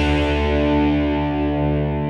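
Closing rock music: a distorted electric guitar chord held and ringing out, its brightness slowly fading.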